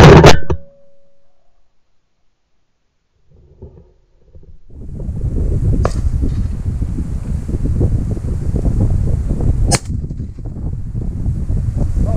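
A single shotgun shot right at the start, very loud and ringing briefly before dying away. After a few seconds of quiet, wind buffets the microphone with a steady low rumble, broken by two sharp clicks.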